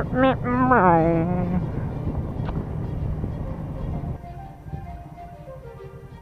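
A man's voice playfully going 'meep' with a falling pitch, then wind and riding noise from a 2013 Honda CBR500R under way. About four seconds in the level drops and quiet background music with a stepping melody takes over.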